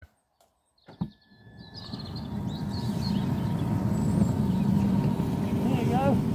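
Ride-on garden miniature railway train pulling away: after a click about a second in, the rumble and fast clatter of its wheels on the rails builds over a couple of seconds and then runs on steadily.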